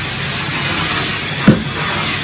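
1974 Electrolux 402 cylinder vacuum cleaner running steadily as its floor nozzle is pushed over a carpet, with a single short thump about one and a half seconds in.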